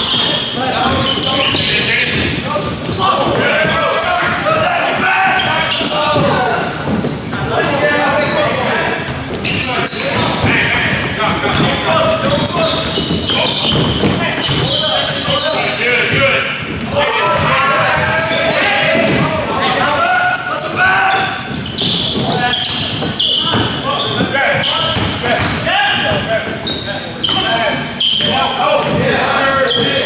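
Basketball game sounds in a large gym: a basketball bouncing on the hardwood court amid indistinct calls and chatter from players and onlookers, echoing in the hall.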